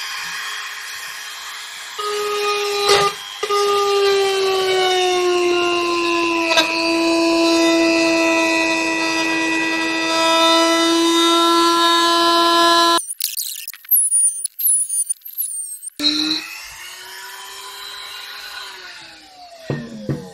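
Guild rotary tool with a cutting bit running at high speed, cutting a square hole in an ABS plastic project box through a 3D-printed jig. It gives a steady whine whose pitch sinks slowly as it cuts, with a few short scraping knocks. The whine breaks off for about three seconds about two-thirds through, then runs again and winds down near the end.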